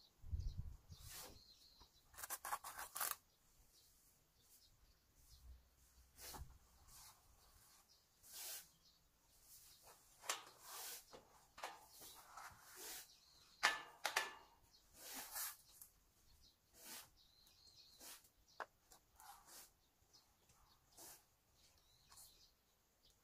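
Faint, scattered rustles and scrapes of hands at work on a house's siding, with a low bump about half a second in.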